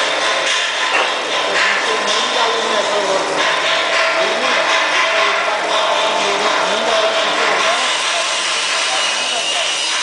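Rotary operator machinery running under a vacuum test: a loud, steady mechanical noise with a constant whine, and indistinct voices wavering underneath.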